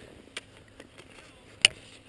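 Faint hiss of skis sliding on groomed snow, with a small click about half a second in and a sharper, louder click about a second and a half in.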